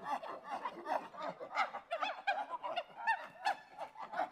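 Creature-voice sound effects for a cartoon grasshopper, built from monkey-, chimpanzee- and squirrel-like calls: many short, overlapping chattering screeches and squeaks that bend up and down in pitch, several a second.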